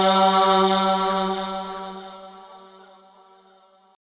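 Closing held note of an Islamic devotional naat sung in chant style: one steady sustained tone that fades out over about three seconds to near silence.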